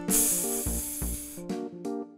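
A hissing whoosh sound effect over light outro music; the hiss fades out after about a second and a half while the music carries on.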